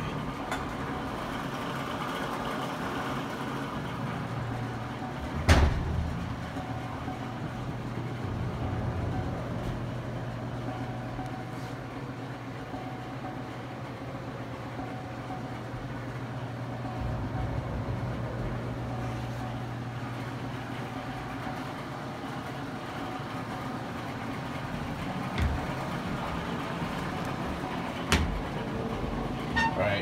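A steady low hum with general room noise, and one sharp loud knock about five seconds in and a few softer knocks near the end.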